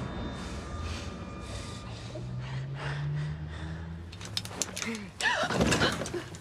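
A low steady drone. About four seconds in, a run of sharp clicks and knocks begins, and near the end it gives way to a loud startled cry from a woman.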